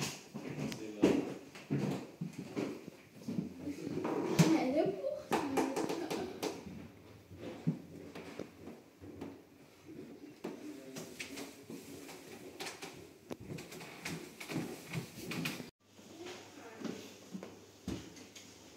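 Indistinct voices talking in a small room; the words cannot be made out.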